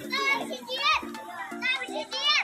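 Young children's high-pitched voices calling and squealing as they play in the water, in four short rising-and-falling cries, over background music with steady low notes.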